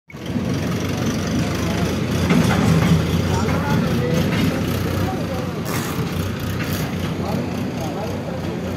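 Indistinct background voices over a steady low rumble, like shop ambience with traffic or machinery running.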